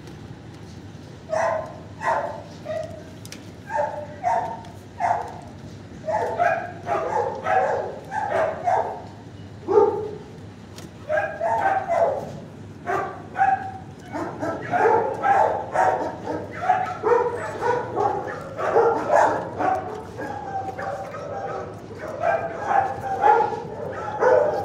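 Dogs barking and yipping over and over, starting about a second in and growing denser in the second half.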